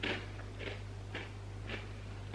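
Pepernoten being chewed: four quiet crunches about half a second apart.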